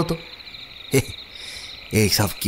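Night ambience of crickets chirring steadily, with one short sharp sound about a second in.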